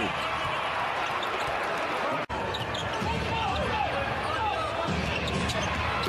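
Basketball arena crowd noise during live NBA play, a steady din of many voices with game sounds on the court. The sound drops out for an instant just over two seconds in, where the footage cuts between plays.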